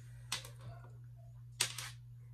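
Two short bursts of crackling clicks about a second and a quarter apart, the second louder, from hands handling locks of hair and a pipe cleaner close to the microphone.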